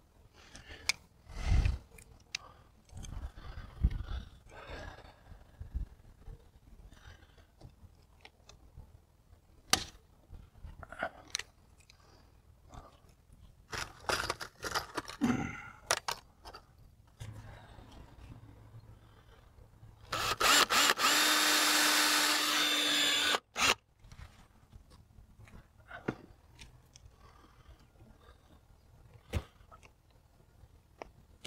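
Scattered clicks and knocks of hand tools and metal being handled, then, about two-thirds of the way through, a cordless drill with an eighth-inch bit running at a steady pitch for about three seconds, drilling a rivet hole through the brace and door.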